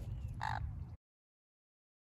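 Sun conure giving one short, harsh squawk about half a second in, over a low rumble; the audio cuts off suddenly at about one second.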